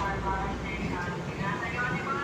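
Inside an LRT Line 1 train car: the steady low rumble of the train running, with passengers talking in the background.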